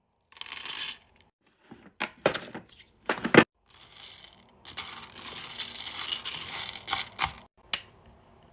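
Hard wax beads poured into a metal wax-warmer pot, rattling in several short spurts and then one longer pour from about halfway through. A sharp click sounds just before the end.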